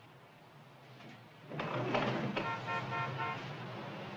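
Street traffic with car horns honking, coming in suddenly about a second and a half in after quiet room tone; several short horn toots follow each other.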